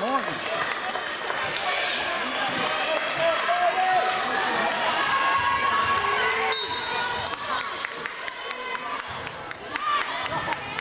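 A volleyball bouncing on the hardwood gym floor and being struck, repeated sharp knocks, over players and spectators calling out.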